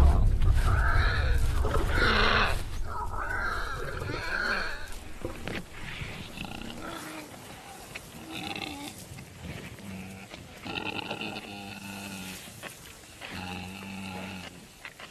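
Warthog squealing in distress as lions catch it: repeated harsh cries, loud in the first few seconds, then shorter, fainter, higher squeals further on.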